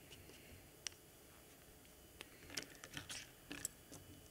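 Faint, scattered light clicks and taps of paintbrushes being handled at the table: a single tick about a second in, then a quick cluster of small clicks in the second half.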